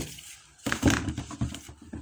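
Metal clicks and knocks of an Allen key working a bolt on a gear pump's coupling flange. There is one sharp click, then a quick run of clicks and clatter about two-thirds of a second in.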